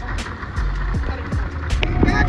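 Motorboat engine running steadily underway with churning wake water, under music with a steady beat.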